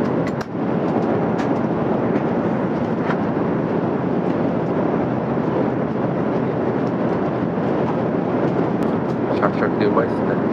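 Steady cabin noise of a JAL Airbus A350-1000 airliner in cruise. A few light clicks of chopsticks against a plastic food container come about half a second in and again near the end.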